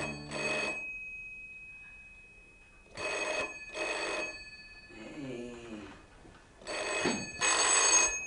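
A telephone bell ringing in double rings, a pair about every three and a half seconds, its tone lingering between the rings.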